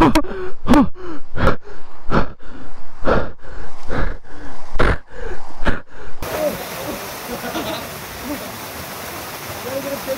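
A man's voice in short, loud, gasping grunts, about two a second, for the first six seconds. Then there is a sudden switch to the steady sound of a waterfall pouring into a rock pool.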